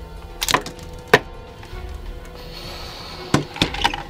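A run of sharp hits in a staged fight: one about half a second in, a louder one just after a second, and a close cluster near the end. A hissing swoosh comes between them, over faint background music.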